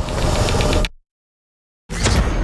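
Trailer sound design: a loud, noisy rumble with a fast rattle in it that cuts off suddenly about a second in, leaving about a second of dead silence.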